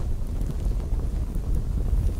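A steady, low, wind-like rumbling noise with a few faint ticks.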